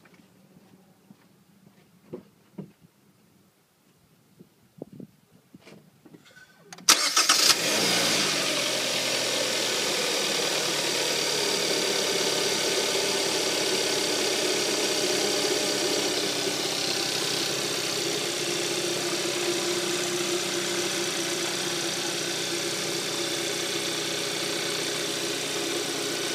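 Hyundai Sonata four-cylinder engine with an Injen cold air intake starting up about seven seconds in, after a few faint clicks. It flares briefly on catching, then settles to a steady idle.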